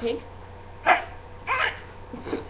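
A girl imitating a pig with her voice: two short, grunting oinks, one about a second in and a second just after, the first the louder.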